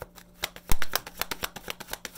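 A tarot deck being shuffled by hand: after a brief quiet moment, a fast run of crisp card flicks and snaps, with one louder slap a little under a second in.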